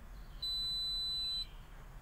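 A single steady, high-pitched electronic beep, about a second long, from the Tata Intra V30's instrument cluster as it runs its ignition-on self-test.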